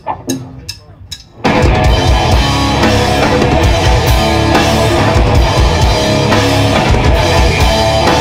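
Four sharp stick clicks counting in, then a live heavy metal band comes in at full volume about a second and a half in: drum kit with rapid bass drum, distorted electric guitars and bass guitar.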